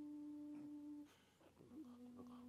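A faint voice holding a long, steady chanted note, which breaks off about a second in. After a short pause a slightly lower held note begins near the end.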